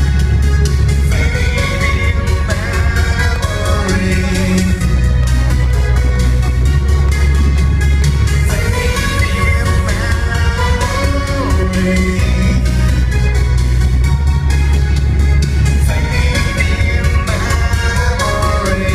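A synth-pop band playing live and loud, with a steady electronic beat and heavy bass synth. The singer's voice comes and goes over the music, captured on a phone microphone.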